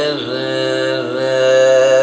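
Male Carnatic vocalist singing a long, steadily held note with a slight slide into it, over a steady drone, in the slow opening phrases of a piece in Raga Shree.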